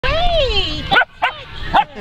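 Standard poodle puppies vocalising excitedly: a drawn-out whine that rises and then falls, followed by three short, sharp barks.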